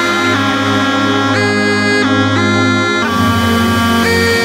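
UK hardcore dance music: a bright, reedy synth lead playing a stepped melody over a steady pounding bass line.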